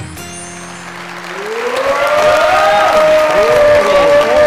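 Show jingle music, joined about a second and a half in by studio audience applause that swells loud, with a held tone and swooping gliding tones in the music over the clapping.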